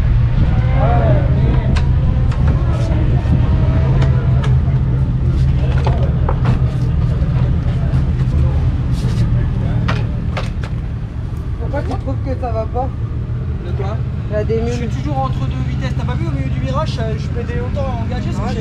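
A steady low engine drone with many sharp clicks and clinks of tools over it; voices join in the second half.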